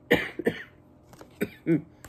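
A woman coughing twice into her fist, two quick sharp coughs, followed near the end by a short voiced throat sound and a few faint clicks.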